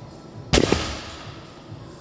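A heavily loaded barbell with rubber bumper plates set down hard on the gym floor at the end of a deadlift: one heavy thud about half a second in, with a brief ring dying away.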